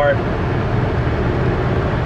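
Steady road and engine noise heard from inside a moving vehicle's cabin, an even low rumble with no distinct events.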